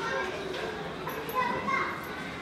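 Faint children's voices in the background.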